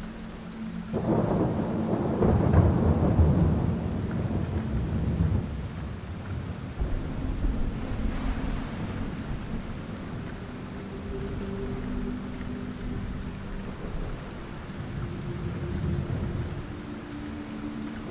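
Thunder rolling over steady rain: a low rumble swells about a second in, then fades over several seconds, leaving the rain to go on.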